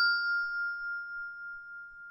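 A bell 'ding' notification sound effect ringing on and slowly fading after being struck. One clear tone carries on, pulsing slightly in level, while fainter higher overtones die away sooner.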